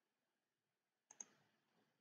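Near silence broken by two faint computer mouse clicks in quick succession, a little after a second in.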